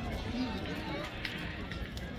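Indistinct chatter and calls from spectators' voices at a ball field, with no clear single event.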